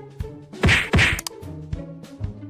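A grey tabby cat swatting an orange cat: two loud, short smacks about a third of a second apart, a little past the middle.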